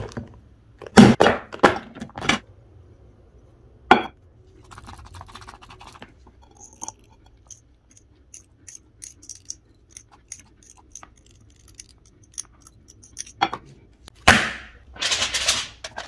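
Close-up handling sounds of packing a hookah bowl with moist shisha tobacco. A few sharp knocks and clinks of the bowl come first, then a soft rustle of tobacco and a run of light ticks about three a second. Two more knocks follow, and a crinkling starts near the end.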